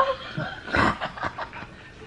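A man's stifled laughter, snickering behind his hand, with one louder breathy burst a little under a second in.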